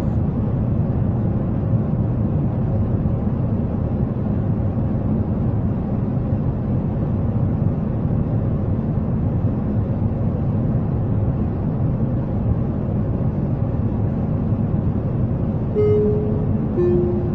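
Steady low roar of airliner cabin noise in cruise, an even rumble without rises or falls.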